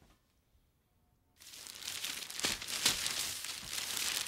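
Near silence, then about a second and a half in a crinkly rustling starts and grows louder: irregular crackling of a crumpled material being shifted and pressed.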